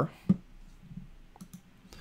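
A sharp computer mouse click about a third of a second in, followed by two fainter clicks near the end.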